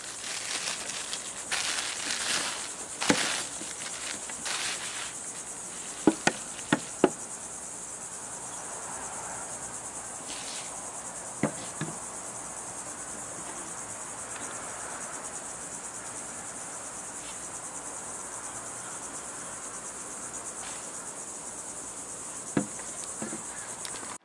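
Bubble wrap crinkling and rustling as a lens is unwrapped over the first few seconds, then a handful of sharp knocks as the Canon 70-200mm lens is handled and set down on a wooden table, four of them close together about six to seven seconds in. A steady high insect chirr runs underneath throughout.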